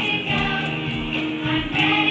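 Music: a song sung by a group of voices.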